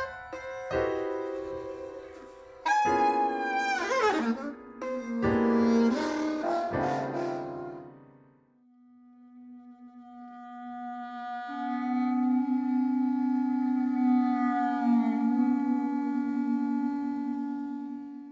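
Freely improvised saxophone and grand piano playing short, scattered phrases. After a brief silence about halfway, a single long low saxophone note swells in and is held steadily.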